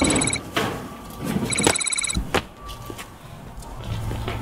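Corrugated metal fence panels clanking and rattling under someone climbing over it, with several sharp knocks spread through. Two short bursts of a rapid, high electronic trill, one at the start and one about one and a half seconds in.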